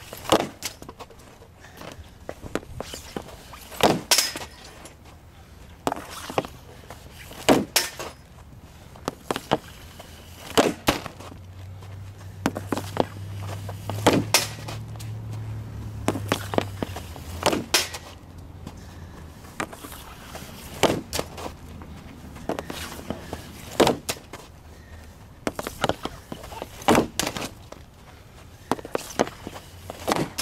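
A run of hockey shots: the stick blade cracks against the puck and the ground about every one and a half to two seconds, each shot a sharp clack, often in quick pairs or threes. A low steady hum rises and fades around the middle.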